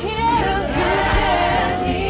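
A choir singing, several voices holding and gliding between notes over sustained low tones.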